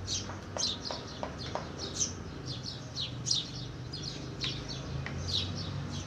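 Small birds chirping over and over in the background, with a few light clicks in the first couple of seconds and a low steady hum underneath.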